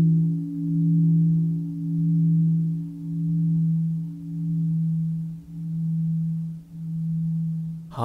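A Buddhist temple bell ringing on after being struck, its low hum wavering in loudness about once a second while slowly fading.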